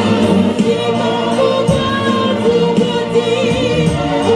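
Gospel song with a woman singing lead into a microphone, backed by other voices and a steady beat of about two strokes a second.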